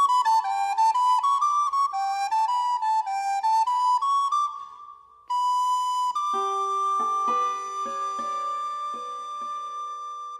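Flute music playing a quick melody of short notes, then a short pause about five seconds in. After that comes one long held note over lower notes that enter one at a time.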